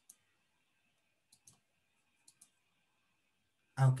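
Three pairs of short, faint clicks about a second apart, with near silence between them.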